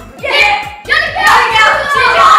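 A group of boys shouting excitedly together, with hand slaps.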